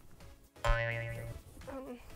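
A springy cartoon-style "boing" sound effect that starts suddenly about half a second in and rises in pitch, lasting well under a second, used as an editing transition.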